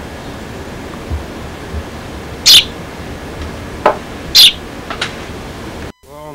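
Young hand-raised sparrow chirping: a few short, high chirps, the two loudest about two seconds apart, over a steady hiss from the old VHS tape.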